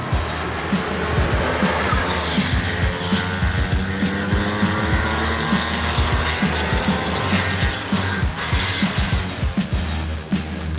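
Supercharged Porsche 997 Carrera 4S flat-six engine pulling hard, its pitch rising slowly, under background music with a steady beat.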